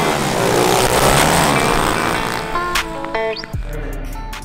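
Background music over several pit bike engines revving, their pitch rising and falling, loudest in the first couple of seconds. About three and a half seconds in, the engine sound drops away and the music carries on.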